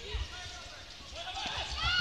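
Volleyball rally on an indoor court: a thud of the ball being played about a quarter second in, then sneakers squeaking on the court floor with voices from players and crowd as a dig is made near the end.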